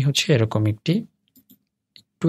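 Talking for about the first second, then a few faint, short computer mouse clicks, two close together about a second and a half in.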